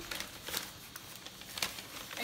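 Tissue paper and cardboard packaging rustling as a baby doll is lifted out of its box, with a few short crackles.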